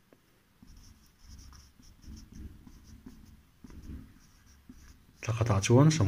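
Marker pen writing figures by hand: a run of faint, short scratching strokes, one after another. A man's voice starts speaking near the end.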